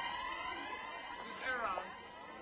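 Siren-like electronic tones over a sound system, many sliding pitches overlapping and fading away, with a short swooping tone that dips and climbs again about one and a half seconds in.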